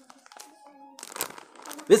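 Plastic snack packet crinkling as it is handled, in short irregular bursts starting about halfway in after a quiet first second.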